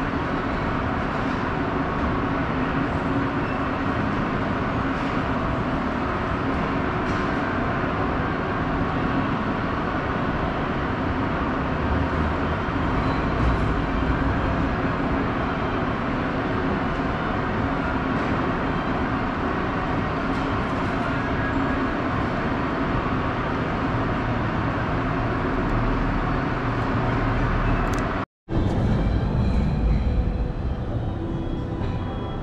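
Mitsubishi pallet-type inclined moving walkway (autoslope) running with a steady mechanical noise. The sound cuts out for an instant near the end.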